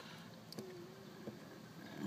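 Quiet room with a few faint clicks from the odometer reset button on a BMW E39 instrument cluster, pressed repeatedly to step through the hidden test menu numbers.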